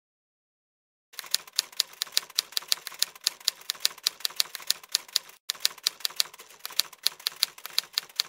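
Mechanical typewriter keys striking in a quick, even run of clicks, about four or five a second, starting about a second in, with a brief break midway.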